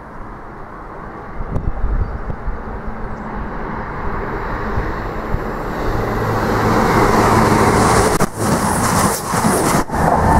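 A passenger train passing non-stop through a station at speed. Its rush of noise builds as it approaches and is loudest over the last few seconds, with a few brief dips as it goes by.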